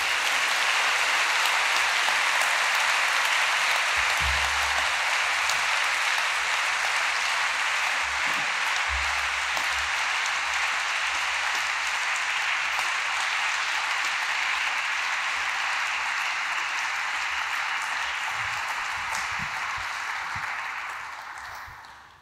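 Audience applauding steadily for about twenty seconds, then fading out near the end.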